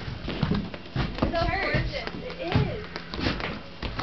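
Indistinct voices of people talking, with a few short knocks or taps in between.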